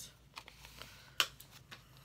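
Paper planner sticker sheets rustling quietly as they are handled and flipped, with a few small clicks and one sharp tick a little past the middle.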